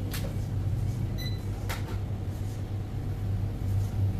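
A steady low hum throughout, with a few light clicks and a brief high electronic beep about a second in.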